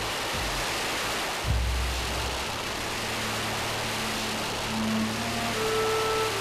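Strings of small firecrackers going off together in a dense, continuous crackle, under background music with a steady low drone. There is a low thump about a second and a half in, and a few held melody notes come in near the end.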